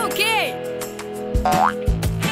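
Cartoon background music with springy boing-like sound effects: a pair of arching pitch glides just after the start, then a quick rising glide past the middle.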